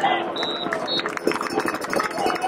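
Football referee's whistle blowing the play dead: one short high blast, then a second, shorter one just after, over crowd chatter.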